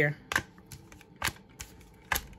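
Tarot cards being handled and laid out: several separate crisp card clicks and flicks.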